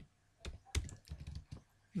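Typing on a computer keyboard: several separate keystrokes, starting about half a second in.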